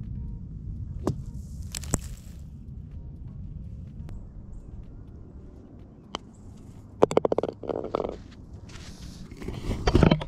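Wind rumbling on a ground-level microphone, with golf shots: a club striking out of a sand bunker about two seconds in, with a brief hiss of sand, then a putter tapping the ball on the green about six seconds in. A quick rattle of clicks follows about a second later.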